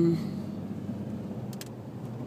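Car interior noise while driving slowly: a steady low rumble of engine and tyres heard from inside the cabin, with two short clicks about a second and a half in.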